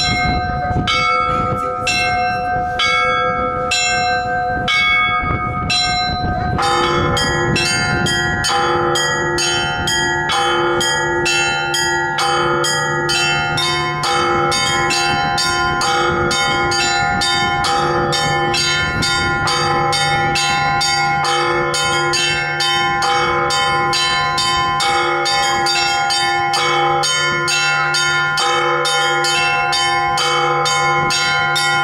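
Russian Orthodox church bells rung by hand from ropes in a bell tower. A single bell is struck about once a second, then at about six seconds the full peal sets in: several small bells in a quick rhythm of about three strokes a second over a deeper, steady bell tone.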